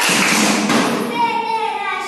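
Children performing a qawwali: a burst of group hand claps and voices calling out together, then a child's high sung line with a held note comes back in about a second in.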